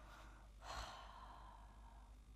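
Near silence with one soft sigh, a brief breath out, a little over half a second in.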